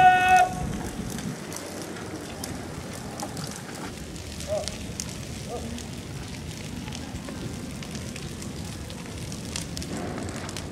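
Burning tyres crackling under a steady rush of outdoor noise, with faint distant shouts about four and five and a half seconds in. A loud, steady held tone cuts off half a second in.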